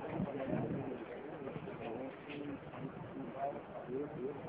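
Several people talking indistinctly over each other, muffled and low, with an even background hum.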